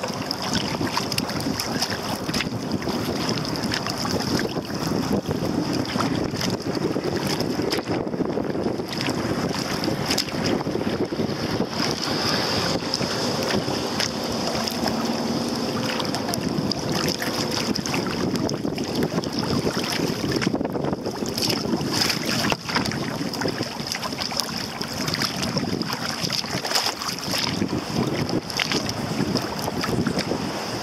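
Wind buffeting the microphone over choppy water lapping against a kayak hull, with the splash and drip of kayak paddle strokes.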